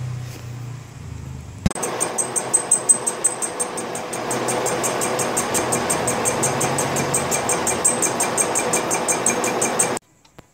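A single-cylinder motorcycle engine idling with a low hum, cut off suddenly less than two seconds in. Then a metal lathe turning a steel part: a steady machining noise with a fast, regular ticking, several times a second.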